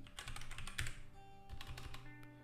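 Computer keyboard typing: a quick run of keystrokes in the first second and a few more near the end, over faint background music.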